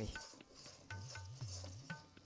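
A metal spoon stirring and scraping a thick barfi mixture around a metal karahi, with a few faint metallic clinks against the pan.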